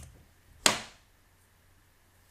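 Two sharp clicks from computer input as a typed value is entered: one right at the start, and a louder one about two-thirds of a second in with a short fading tail.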